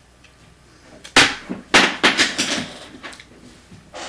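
Hands working a fingerboard deck with label paper and clear tape: a sharp handling noise about a second in, then a quick run of several more that fade out.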